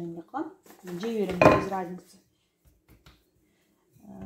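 A voice held on one pitch for about a second, with a sharp knock in the middle of it, then a few light taps of a wooden rolling pin on the counter while dough is rolled out.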